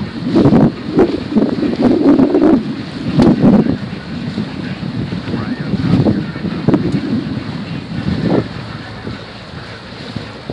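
Wind buffeting the microphone on a moving boat, in uneven gusts, over the wash of water against the hull. The gusts are heaviest in the first few seconds and ease off toward the end.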